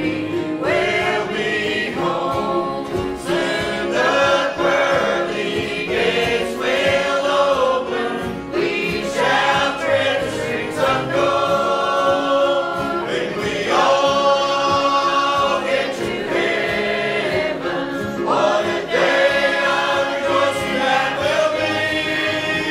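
A group of voices singing a hymn together in held, slow-moving phrases.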